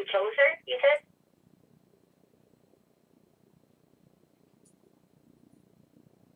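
A voice over a telephone line speaks for about a second, then only faint line hiss remains.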